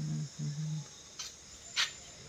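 A man's short hummed murmurs, like "uh-huh", then two sharp clicks about half a second apart, the second louder.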